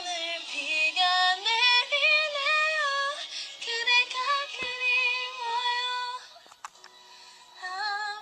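A woman singing a melody in long held notes with vibrato, heard over a phone's speaker from a live stream. She breaks off about six seconds in and starts again just before the end.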